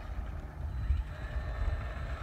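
Wind rumbling on a phone microphone, with low, uneven knocks of the phone being handled.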